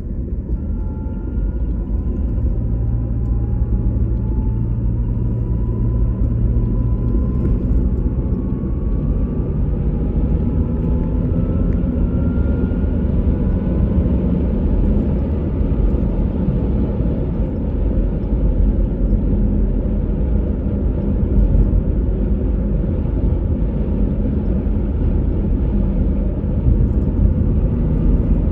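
Car driving on a paved road: a steady low rumble of engine and tyres, with a faint whine that climbs in pitch over the first dozen or so seconds as the car gathers speed.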